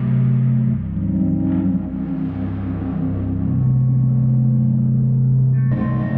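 Ambient guitar pad from the 8Dio Emotional Guitars Pads sample library, played as sustained, slowly changing low chords from a keyboard. A brighter, higher chord comes in near the end.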